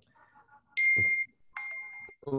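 Two short electronic beeps at the same high pitch: the first loud, about half a second long, with a low thump under it; the second fainter, just before the end.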